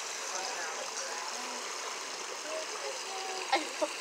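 Steady rush of running water from the penguin pool, with faint voices in the background and a few short clicks near the end.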